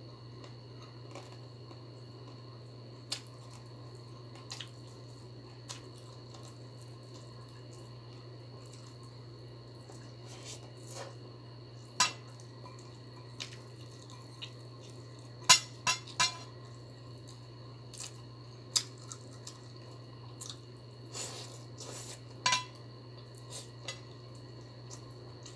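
Scattered sharp clicks and clinks of fingers picking rice and vegetables off a ceramic plate while eating by hand, with a quick cluster of three louder clicks just past the middle, over a steady low hum.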